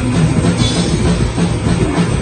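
A rock band playing live: electric guitars and a drum kit, loud and dense, with low notes pulsing about four times a second.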